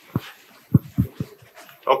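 About four short, dull low thumps spread over the first second and a half, then a voice begins near the end.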